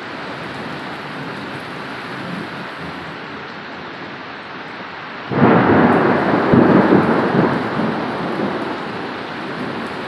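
Steady rain falling, then about five seconds in a sudden loud thunderclap that rumbles on for a few seconds and slowly fades.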